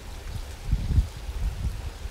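Low, uneven rumbling noise on a hand-held camera's microphone as the camera is moved about outdoors, swelling briefly about a second in.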